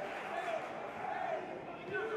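Faint open-air football ground ambience: a low murmur of a small crowd with faint distant voices.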